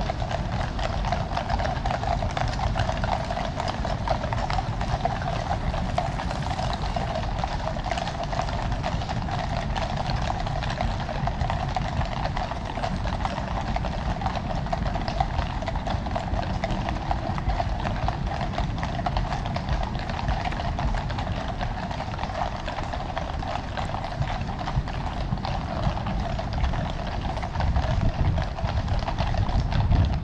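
Shod hooves of a column of mounted cavalry horses clip-clopping on a tarmac road, a continuous many-hoofed patter with no pauses, over a steady outdoor background.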